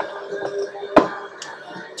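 A sharp click about a second in as a numbered token is picked out of a cigar box, over music playing in the background.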